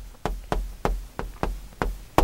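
Chalk tapping against a chalkboard as words are written: a quick series of sharp taps, about four a second.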